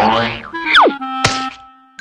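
Cartoon sound effects: a loud whoosh, then a quick falling whistle, then a sharp thunk with a brief ringing tone just past the middle.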